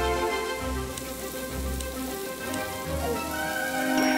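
Hanwoo beef sizzling on a tabletop grill, a steady hiss with a few faint pops, under background music with held notes.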